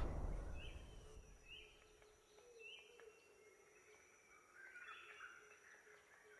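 A louder sound dies away over the first second or so. Then come faint bird chirps: three short, similar calls about a second apart, and a brief flurry of chirps near the end.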